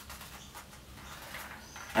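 Faint handling noise: soft rustling and a few light clicks as two small tubes threaded with string are held and evened up in the hands, over quiet room tone.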